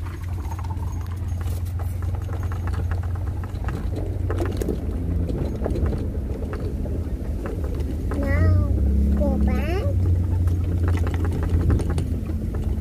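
Strong wind buffeting the microphone: a steady low rumble. Brief voices come through about eight and nine and a half seconds in.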